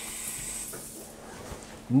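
Hotel shower head spraying water onto tile with a steady hiss, at pressure called more than adequate. The spray fades out about a second in as the shower valve is turned off.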